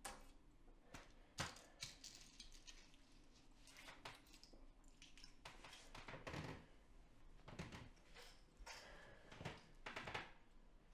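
Near silence in a small room, broken by faint rustles and a few soft knocks as a person shifts on a bed and handles things beside it.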